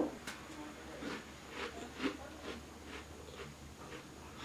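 A chocolate chip cookie being bitten and chewed: faint, irregular crunches spread across a few seconds.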